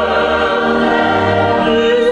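Mixed choir singing with a chamber orchestra of strings and brass in a sacred oratorio, holding sustained chords over a bass line that move to a new chord near the end.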